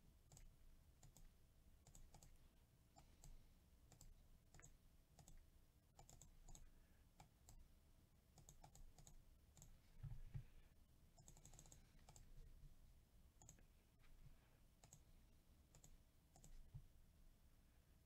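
Faint, irregular clicking of a computer mouse and keyboard, a few clicks a second, with a short cluster of clicks about eleven seconds in.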